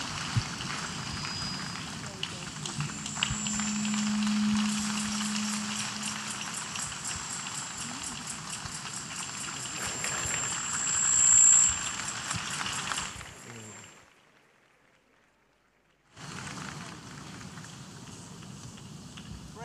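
A large congregation clapping and cheering in a big hall, a dense steady wash of applause for about thirteen seconds. It fades out to near silence for about two seconds, then quieter crowd noise resumes near the end.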